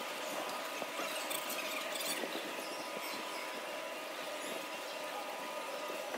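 Faint, steady ambience of a large indoor mall hall, thin and hissy, with a faint steady tone and a few small ticks.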